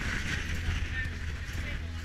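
Wind buffeting the microphone with a steady low rumble, over the patter of many runners' footsteps on the road.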